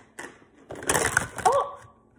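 Close crackling and crunching lasting about a second, with a brief squeak near its end, preceded by a few light clicks.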